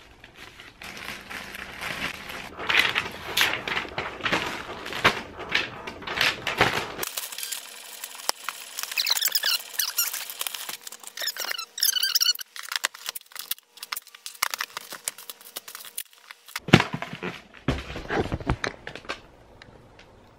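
Packing materials being handled: a marker squeaking and scratching on a plastic poly mailer, and later sheets of paper rustling and crinkling as labels are sorted, with a louder burst of rustling near the end.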